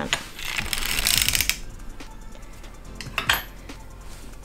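Erlbacher circular sock machine cranked round through the last pass of a heel: a quick metallic clicking rattle for about a second and a half, then a few lighter clicks and one sharper click a little before the end as the carriage is brought to a stop.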